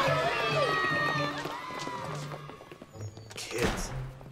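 A crowd of children shouting and cheering over film score music, the voices dying away after about a second and a half. A single loud thud near the end.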